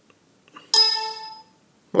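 A computer chime: a single bright ding about a second in, its stacked tones dying away over most of a second, with a couple of faint clicks just before it.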